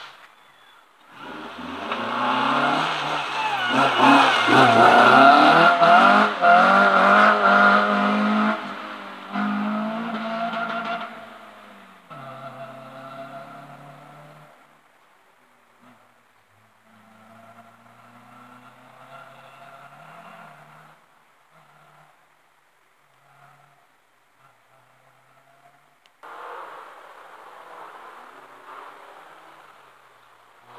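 A rally car comes through the stage at speed, its engine revving hard with the pitch rising and dropping through gear changes and lifts. It is loudest for several seconds, then fades as it drives off into the distance. Near the end another engine starts to be heard.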